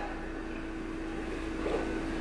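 A steady low hum with a faint single tone held over it: background room tone in a gap between speech.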